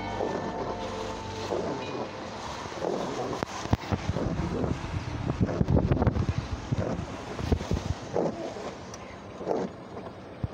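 Wind buffeting a phone's microphone in a moving car, with road rumble and irregular knocks and thumps, heaviest in the middle of the stretch.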